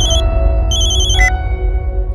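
Mobile phone ringtone: rapid, high, warbling beeps in short bursts, the last one cutting off about a second and a quarter in as the call is answered. Loud background score with sustained low bass tones runs beneath it.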